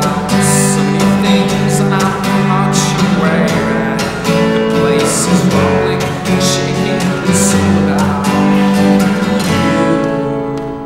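Steel-string acoustic guitar strummed in a steady rhythm, chords ringing between the strokes.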